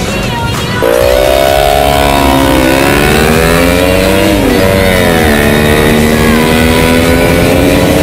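Motorcycle engine, likely the Suzuki Bandit GSF400's inline-four, heard from the bike under the rider at track speed over wind noise. Starting about a second in, the engine pitch climbs and falls with the throttle, with a sharp drop about four and a half seconds in before it climbs slowly again.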